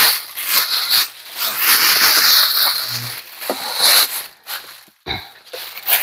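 Plastic bag crinkling and rustling in irregular bursts as it is handled and wrapped around a small item.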